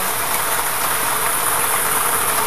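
Lottery draw machine running to select a number: a steady rushing hiss that holds at an even level.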